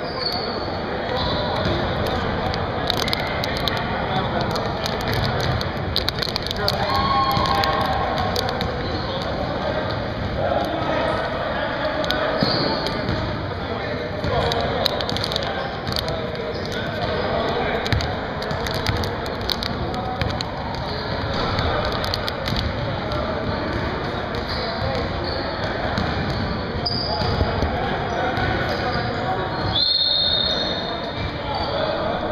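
Basketball bouncing on a hardwood gym floor among the voices of players and bench, with short knocks throughout and a few brief high-pitched squeaks.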